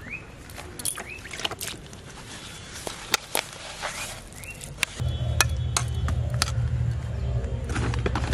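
Hands mixing and squeezing damp bait dough in a metal bowl, with scattered sharp clicks and scrapes, over short rising bird chirps. About five seconds in, a steady low rumble like a running engine starts and becomes the loudest sound.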